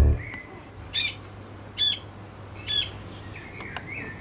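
Fledgling great tit calling: three short, high calls evenly spaced a little under a second apart, followed by fainter chirps near the end.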